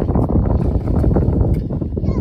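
Wind buffeting the microphone: a loud, steady rushing rumble.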